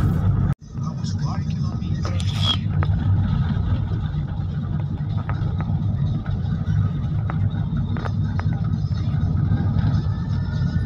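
A car driving on a snow-covered road, heard from inside the cabin: a steady low rumble of engine and tyres. Background music cuts off abruptly about half a second in.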